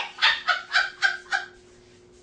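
A person laughing in five short, quick 'ha' bursts, about four a second, dying away after about a second and a half.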